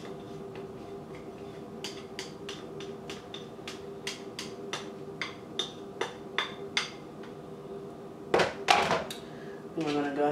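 A spoon knocking and scraping chopped boiled eggs out of a small bowl into a large mixing bowl: a string of sharp taps, about two a second, then a louder clatter of knocks about eight seconds in. A faint steady hum runs underneath.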